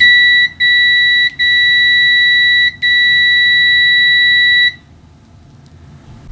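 Kaiweets HT208D clamp meter's continuity beeper sounding a loud, steady high-pitched tone, broken by three brief dropouts in the first three seconds, then stopping just under five seconds in.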